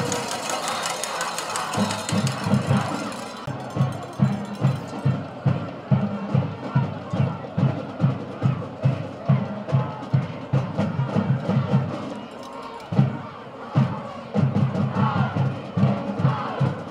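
Stadium drums, likely a marching band's drumline, pounding out a steady beat of about two to three low hits a second over crowd noise. The drumming breaks off briefly about three-quarters of the way through, then starts again.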